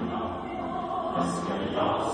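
A large mixed choir of women's and men's voices singing an isiXhosa choral piece in full harmony, holding sustained chords.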